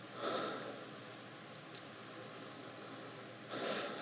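A person's short, sharp breath in, about a quarter second in, over steady soundtrack hiss, with another breath near the end.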